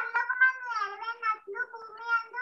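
A young boy's high-pitched voice drawn out in a sing-song run of syllables, chanting or reciting rather than plain talk.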